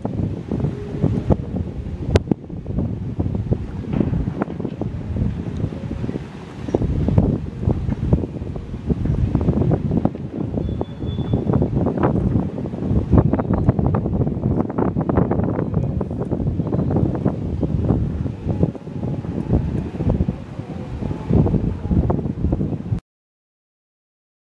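Strong wind buffeting the camera microphone: a dense, gusting rumble that cuts off suddenly about a second before the end.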